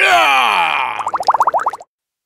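Cartoon sound effect: a pitched tone sliding downward for about a second, then a quick warbling run of short rising chirps, about eight a second, that stops shortly before the end.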